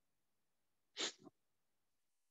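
A person's single sharp cough about a second in, followed at once by a smaller second burst.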